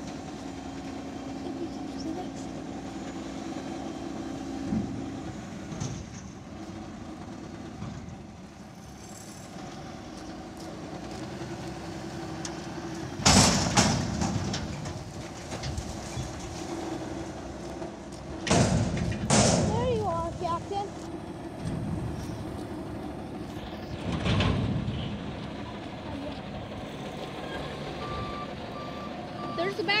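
Autocar front-loader garbage truck with a Heil DuraPack Python body running while it lifts and empties a dumpster overhead, with four loud sudden noises from the dump about halfway through. Its reversing beeps start near the end.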